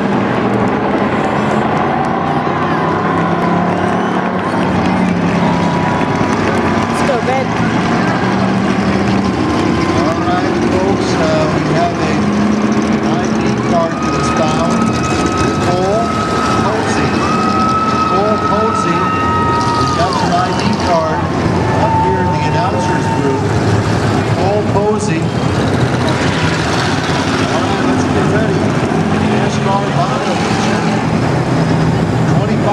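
A pack of stock cars racing around a short oval, many engines running together in a steady loud drone, with indistinct voices over it.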